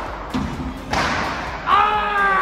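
A squash ball hits twice, about half a second apart, each hit ringing in the hard-walled court. Near the end comes a man's drawn-out vocal cry.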